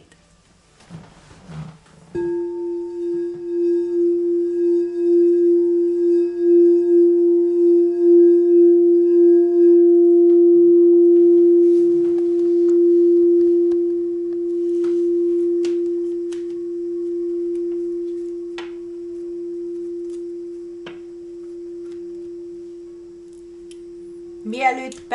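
Clear quartz (rock crystal) singing bowl played with a wand. It sounds one pure, steady tone from about two seconds in, swelling with a pulsing wobble for about eight seconds, then fading slowly.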